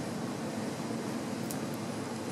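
Steady background fan noise, an even hiss with no clear pitch, with a faint click about one and a half seconds in.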